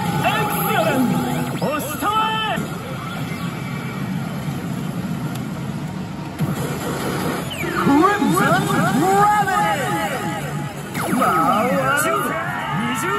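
Elite Salaryman Kagami pachislot machine playing its own music, swooping sound effects and character voice lines, busiest near the start and again in the last few seconds.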